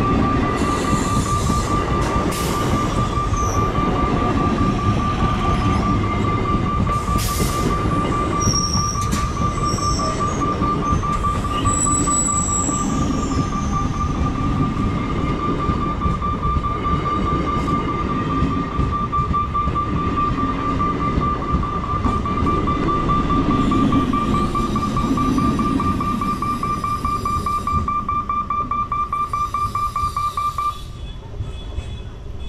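EMU electric local train running past, its coaches rumbling over the rails, easing near the end as the last coaches clear. A steady, high, rapidly pulsing ringing tone, typical of a level-crossing warning bell, sounds throughout.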